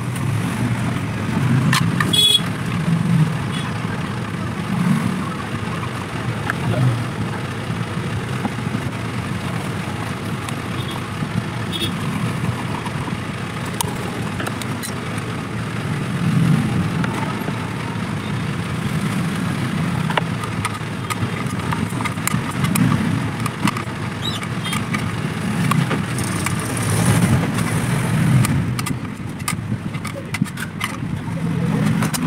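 Steady low background rumble that swells now and then, with a few light clicks and taps from handling the iron.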